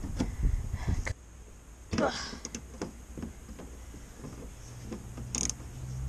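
Faint clicks and rustling from hands working the plastic clips of a car's wheel-arch liner, broken by a short groan of effort about two seconds in.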